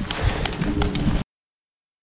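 Hoofbeats of a horse loping on a dirt arena floor, cut off suddenly just past a second in, leaving dead silence.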